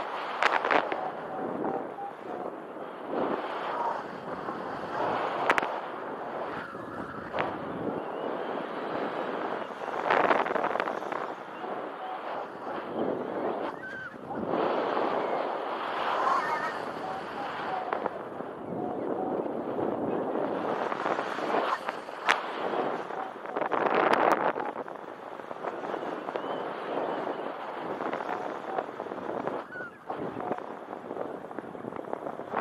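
Wind rushing over the camera microphone of a paraglider in flight, rising and falling in gusty surges every few seconds, with a few sharp clicks.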